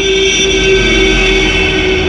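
An elderly woman's voice holding one long, steady sung or called note that stops near the end.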